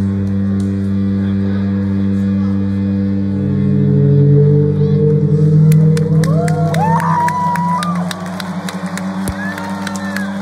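A sustained, droning chord of held low notes from the concert sound system. About six seconds in, the arena audience breaks into cheering and whooping, with scattered claps over the drone.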